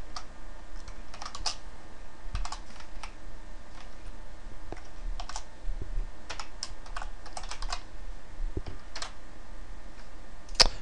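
Typing on a computer keyboard: scattered, irregular keystrokes in small clusters, with pauses between them.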